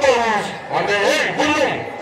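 A man speaking into a microphone.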